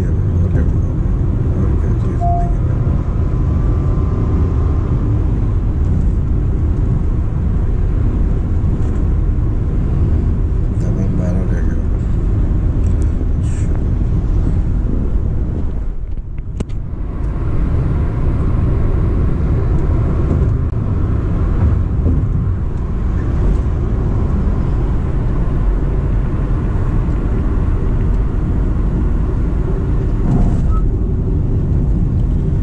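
Steady low road and tyre rumble inside the cabin of a Honda City e:HEV hybrid sedan cruising at highway speed, with a brief dip in loudness about halfway through.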